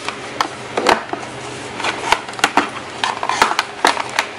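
Eyeshadow palettes clicking and knocking against one another and the drawer as they are handled and rearranged, a dozen or so irregular sharp clacks.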